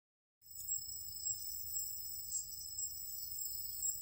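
A chorus of insects trilling in steady high-pitched tones at several pitches, starting after a brief silence, over a faint low rumble.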